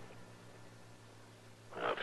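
Low, steady hum with faint hiss from the old radio recording in a pause between lines of dialogue, then a man's hesitant "uh" near the end.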